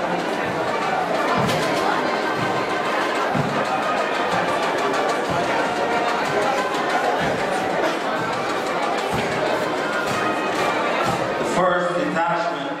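Parade music from a military band playing a march, mixed with the murmur and chatter of a crowd in the stands.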